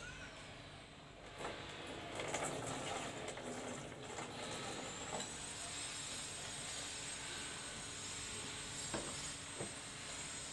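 Red strawberry-flavoured soda poured from a plastic bottle into a large jar: a steady, hissing pour of fizzing liquid that starts about a second and a half in and runs until near the end, followed by a couple of light clicks.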